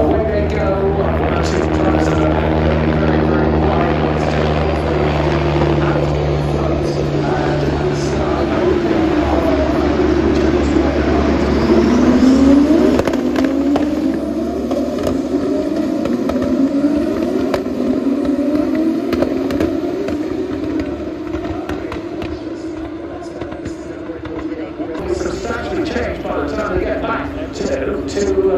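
Pack of single-seater race cars heard from a distant grandstand: a steady engine drone for the first several seconds, then many overlapping engine notes rising and falling as the cars accelerate and change gear, loudest about halfway through.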